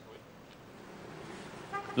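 Faint street traffic noise, growing slightly louder, with a short car horn toot near the end.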